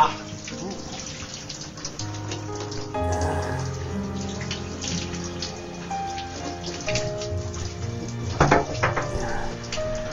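A shower running, with water spraying steadily, under background music with a bass line.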